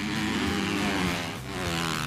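Dirt bike engines revving and accelerating, their pitch rising and falling, with a brief drop about a second and a half in before climbing again.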